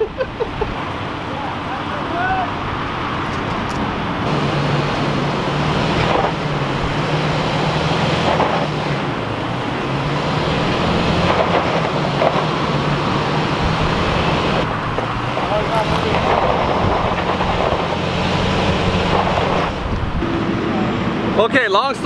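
Pickup truck engine running under load as it pulls a heavy bus off a trailer. Its pitch rises and falls from about four seconds in until near the end.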